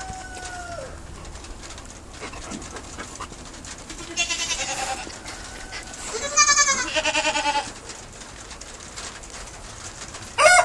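A young goat bleating twice: a quavering call about four seconds in, then a louder, longer one at about six and a half seconds. A rooster's crow trails off in the first second.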